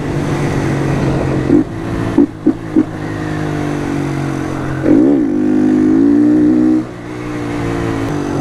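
Honda motorcycle engine running under way, with a few quick throttle blips about two seconds in. About five seconds in it revs up and back down, then pulls harder and louder for nearly two seconds before the throttle is rolled off.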